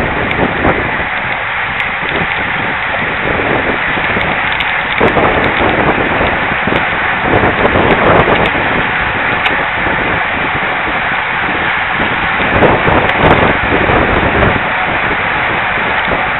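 Wind rushing over the microphone of a bike-mounted camera, mixed with the crackling rattle of a road bike rolling over the road surface.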